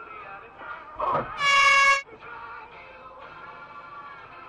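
Car horn sounding one steady, flat-pitched blast of about half a second, a short burst just before it, over background music.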